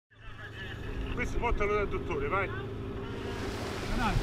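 Several people shouting and calling out over one another above the steady drone of a boat engine. The calls die away after about two and a half seconds, leaving the engine.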